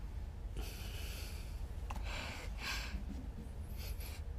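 A man taking a few short, hissing breaths in at a cup of bone soup held to his face, over a low steady hum.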